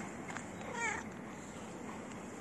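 A cat gives one short meow about three-quarters of a second in, over a steady background hiss.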